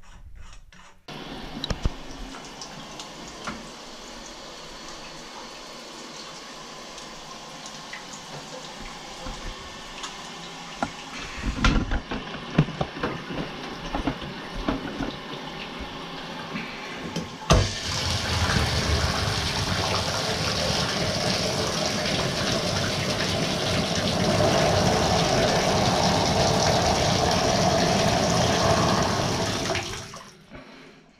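Water running from a bathtub spout through a Delta single-handle mixing valve into the tub. A few knocks come about halfway through, after which the flow is louder and stays steady.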